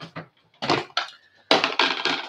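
Plastic clip-lock lid being unclipped and pulled off a glass food storage container: a few short clicks and plastic scrapes in two bursts, about a second apart.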